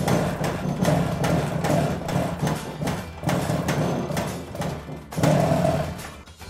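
Old motorcycle engine started and running, firing unevenly with irregular pops, steadying into a more even note near the end.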